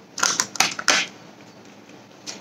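A small cardboard lipstick box being opened by hand: a quick cluster of about four scraping, clicking rustles within the first second as the white inner tray slides out of its gold sleeve.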